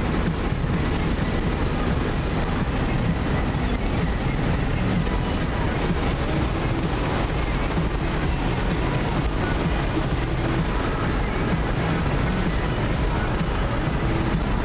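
Steady road and wind noise inside a moving car cruising on the highway: an even low rumble and hiss with no changes.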